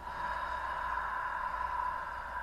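A woman's long audible sigh on the exhale, a breathy "haa" that swells in and then slowly fades away.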